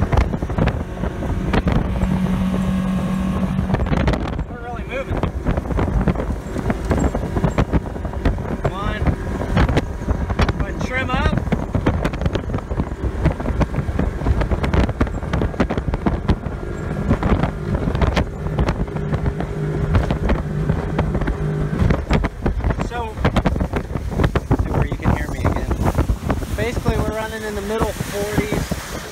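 A 2008 Hurricane 202 deck boat's engine running at full throttle, with wind buffeting the microphone and water rushing past the hull.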